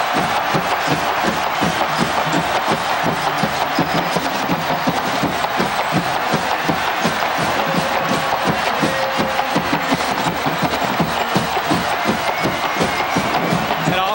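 Large stadium crowd cheering loudly and steadily after a go-ahead touchdown, with band music playing through the noise.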